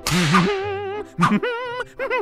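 Cartoon tumble sound effects: a sharp whip-like crack at the start, then a wavering, warbling cry as the character tumbles down the stairs.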